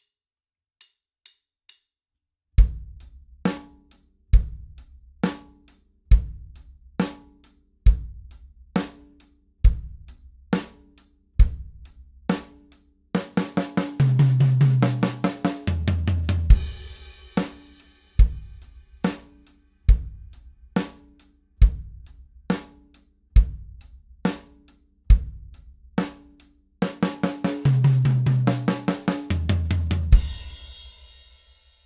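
Four-piece drum kit playing a slow basic rock groove on bass drum, snare and hi-hat, after a few quiet clicks counting in. After three measures comes a sixteenth-note fill running snare, rack tom, snare, floor tom, landing on a crash cymbal with the bass drum. The cycle plays twice.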